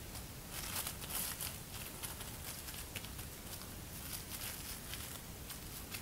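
Plastic wrap crinkling faintly in scattered small crackles as hands press and scrunch it down onto a wet watercolor page.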